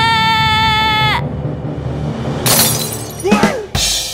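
Background music overlaid with comedy sound effects. A long, steady, high whistle-like tone stops about a second in. Later comes a crash-like burst of noise, a short wavering tone that falls in pitch, and another crash at the end.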